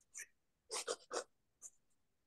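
A few short, scratchy rustling sounds, separated by silence.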